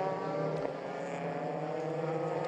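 Single-seater formula race car engine running at steady revs: an even drone whose pitch barely changes.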